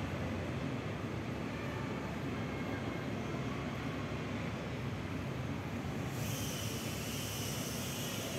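Small FPV drone's propellers giving a steady rushing whir in flight, growing brighter and hissier about six seconds in.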